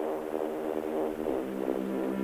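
Electronic music opening with sustained synthesizer chords, beginning abruptly; the chord changes after about a second and a quarter.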